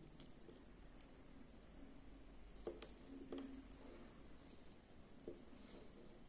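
Near silence, broken by a few faint taps and clicks in the middle and near the end from the solder wick reel and soldering iron being pressed against the circuit board during desoldering.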